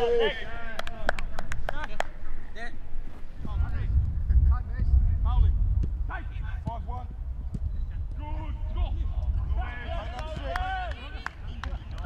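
Footballs being kicked in a passing drill: a quick run of sharp strikes, densest in the first few seconds, among players' shouts and calls across the pitch. A low rumble comes in at about three and a half seconds.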